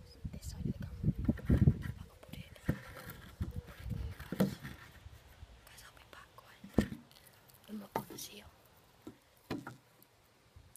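A boy whispering close to a phone's microphone, with rubbing and bumping from the handheld phone and a few sharp knocks.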